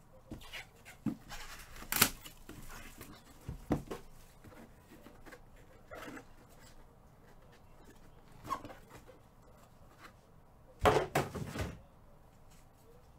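Gloved hands handling and opening a small cardboard Luminaries trading-card box: a few scattered taps and rubs, then a louder run of scraping and knocking near the end as the encased card is slid out.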